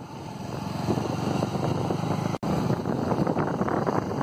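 Steady low engine rumble of a moving vehicle, with wind buffeting the microphone. The sound drops out for an instant a little past halfway.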